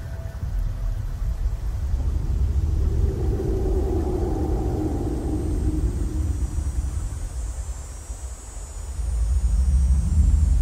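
Dark ambient soundtrack: a deep, steady rumbling bass drone with a mid-pitched swell that builds and fades in the middle and faint high shimmering tones in the second half. The rumble dips briefly near the end, then comes back louder.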